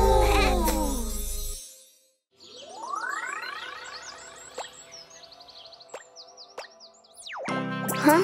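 A children's cartoon song ends on a final chord with falling glides. After a short pause, a rising sweep of tones and rows of short high chirps open the next scene, with a few light clicks, and a quick whistle-like glide leads into new music near the end.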